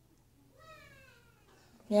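A single faint, high-pitched call about a second long, falling slightly in pitch.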